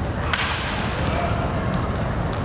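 A baseball bat strikes a pitched ball once, a sharp crack about a third of a second in, over a steady low rumble.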